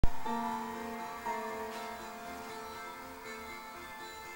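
Background music: sustained ringing instrumental notes, struck at the start and again about a second in, then slowly fading.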